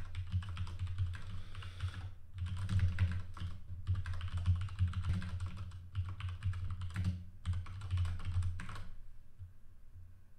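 Fast typing on a computer keyboard in bursts of clattering keystrokes, with a short break about two seconds in. The typing stops near the end.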